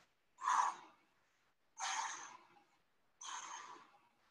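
A woman breathing out hard with the effort of bicycle crunches: three forceful exhales about a second and a half apart.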